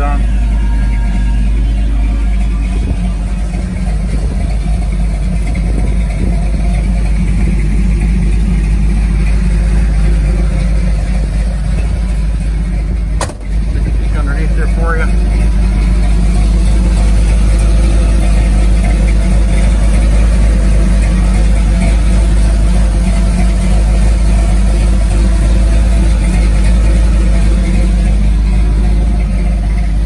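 Ford 400 cubic-inch V8 with a mild cam idling steadily through a dual Flowmaster exhaust. There is a brief dropout about 13 seconds in.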